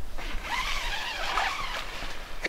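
Zipper on a pop-up tent's door being pulled open in one long, continuous rasp.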